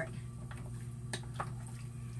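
Wooden spoon stirring a pot of roast beef and vegetables in broth, with a few light ticks of the spoon against the pot, over a steady low hum.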